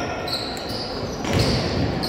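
Basketball being dribbled on a hardwood gym floor during play, with spectators' voices in the background.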